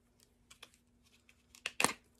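Plastic clamshell wax-melt pack being handled and snapped open: a string of light plastic clicks, a few early on, then a louder cluster near the end as the lid pops.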